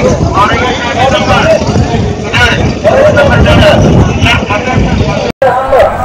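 Several people talking and chattering outdoors over a steady low rumble of vehicles. The sound drops out for an instant near the end.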